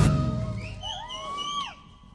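A live forró band's closing chord ringing out and fading away, with a high note that swoops upward and then drops off about a second in.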